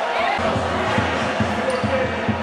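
Rapid low thuds, a few a second, begin about half a second in, over voices echoing in a large hall.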